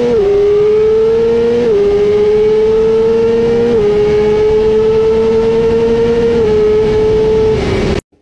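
Sport motorcycle engine under hard acceleration at high revs, its pitch climbing between upshifts and dropping sharply at each of about five gear changes, over a steady rush of wind. The sound cuts off suddenly at the end.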